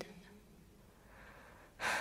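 A woman's faint, short in-breath in a pause between spoken lines, about a second in. Her next word begins right at the end.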